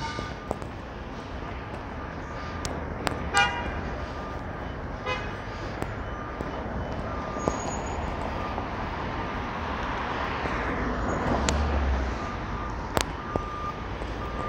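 Street traffic noise with a vehicle passing, the rush swelling to a peak late on and then falling away. A few short pitched toots sound near the start and again around three and five seconds in.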